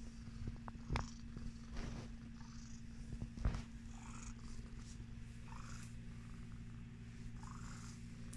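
Sphynx cat purring steadily, close up. A few soft thumps break in during the first half, the loudest about three and a half seconds in.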